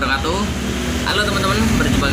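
A man talking, with a steady low hum underneath.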